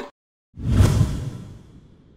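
Sound-effect whoosh with a deep low boom, starting about half a second in and fading away over the next second and a half.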